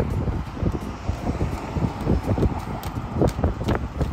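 Wind buffeting the microphone in uneven gusts, a heavy low rumble.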